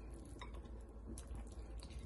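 Water boiling in a stainless steel pot on the stove, heard faintly as soft bubbling with a few light ticks and pops.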